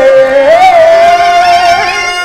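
A male voice singing one long held, wavering note of a stage verse, rising slightly about half a second in, over a steady instrumental drone.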